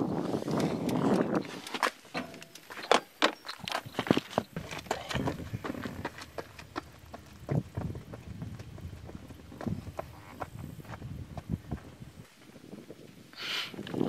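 Footsteps crunching on gravel: irregular scuffs and clicks rather than a steady stride. A brief hiss of noise comes near the end.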